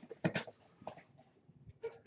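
Faint handling sounds: a few short clicks and rustles, a cluster about a third of a second in and more just before the end, as cardboard packaging is handled on a desk.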